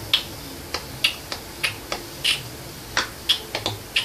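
A run of about ten short, sharp clicks at uneven intervals.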